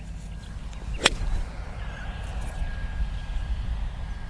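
Golf iron striking a ball once on a three-quarter practice swing: a single sharp click about a second in, over a low steady rumble.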